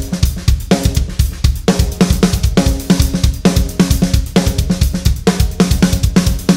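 Acoustic drum kit playing a fast, busy groove: snare hits woven between closed hi-hat strokes, with kick drum and ringing tom and snare tones, in a phrase that repeats about once a second.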